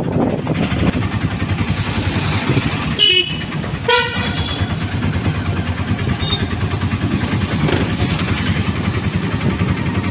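Auto-rickshaw's small engine running steadily as it drives through traffic, heard from inside the open cabin. Two short horn toots sound about three and four seconds in.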